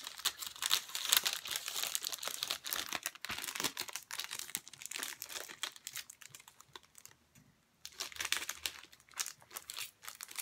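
A packaged set of paper prints crinkling and crackling as it is handled and pulled at, with a brief lull about seven seconds in.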